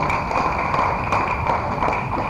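Audience applause right after a sung hymn ends: a dense patter of handclaps that eases slightly.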